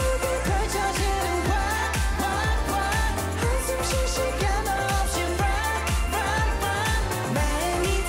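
K-pop dance-pop song with male vocals singing in Korean over a heavy, steady electronic beat.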